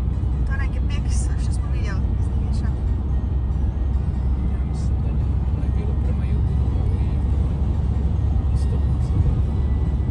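Steady low rumble of road and engine noise inside a car's cabin at motorway speed.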